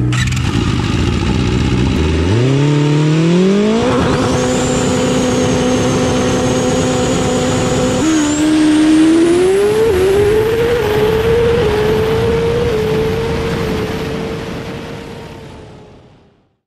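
A vehicle engine revving: its pitch climbs over a couple of seconds and holds high with a thin high whine, drops and climbs again about halfway through, then fades out near the end.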